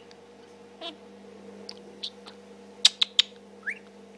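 Budgerigar chattering to itself: scattered short clicks and chirps, a quick cluster of sharp ticks about three seconds in, and a brief rising chirp near the end.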